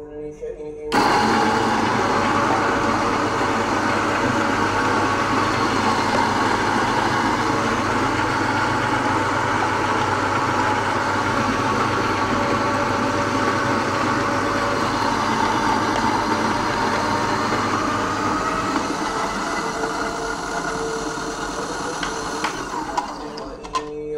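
Niche Duo burr coffee grinder running steadily, grinding espresso beans for about twenty seconds. Its lower grinding note fades in the last few seconds before the motor stops.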